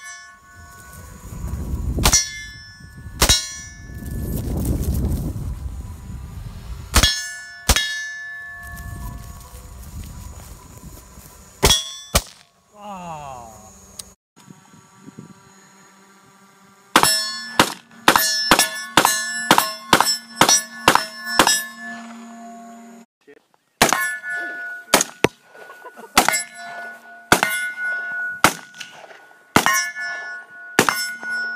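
Rifle shots fired at steel targets, each hit answered by a metallic clang and ring from the steel plate. Single shots come first, then a quick string of about a dozen shots just past the middle, then more single shots near the end.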